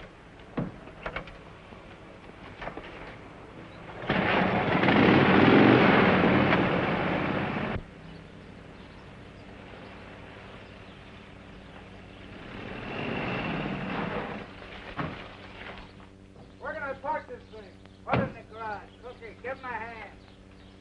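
A car and a motorcycle start up and pull away with a loud, rough engine noise for about four seconds, cut off abruptly. A vehicle later swells in and fades as it passes, and birds chirp near the end.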